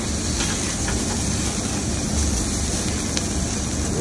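Steaks searing over an open-flame grill: a steady roar of fire with an even, high sizzling hiss, unbroken.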